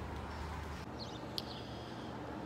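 Faint outdoor background with a low hum, and a short high bird chirp about a second in.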